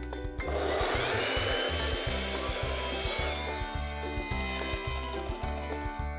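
Evolution mitre saw cutting through a square wooden strip, the sawing noise starting about half a second in and fading after about three seconds, over background music with a steady beat.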